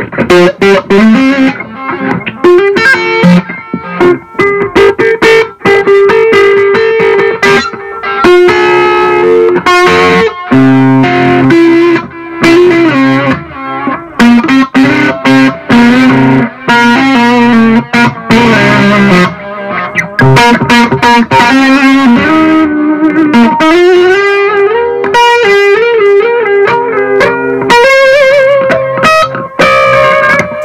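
Electric guitar played through a Blackstar ID:Core 100 combo amp with its delay effect on: a continuous run of picked single notes and held notes that ring on.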